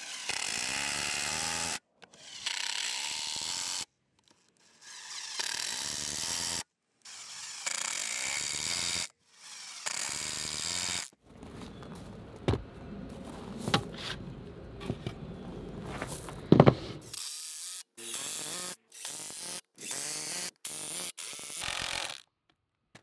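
Cordless Milwaukee M18 Fuel impact driver hammering 2.5-inch star-drive exterior deck screws into lumber, in several short runs of rapid rattling separated by abrupt gaps. A few sharp knocks come between runs in the middle.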